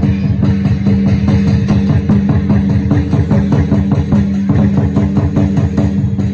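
Dragon-dance percussion ensemble of drums and cymbals playing a fast, steady beat, about five strikes a second, over a sustained low ringing tone.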